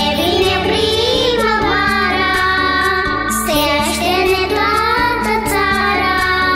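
A children's choir singing a song in Romanian over an instrumental backing track.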